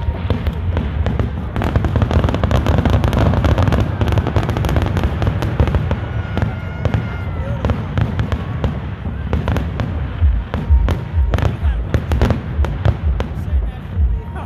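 A fireworks display going off in a rapid barrage of sharp bangs and dense crackling, thickest a few seconds in. Heavier low booms come near the end.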